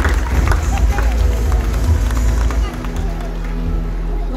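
Outdoor stadium ambience: background music and indistinct voices over a heavy, uneven low rumble. Steady low tones come in about two-thirds of the way through.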